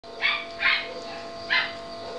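Puppies yipping while play-fighting: three short, high-pitched yips, the last about a second and a half in.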